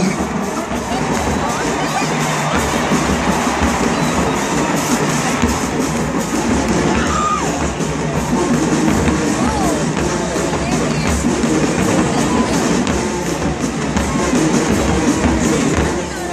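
Marching band playing a dance tune over a steady bass-drum beat, with crowd cheering from the stands mixed in.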